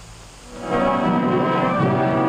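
Orchestral film score with brass: after a brief hush, a loud sustained brass chord swells in about half a second in and is held.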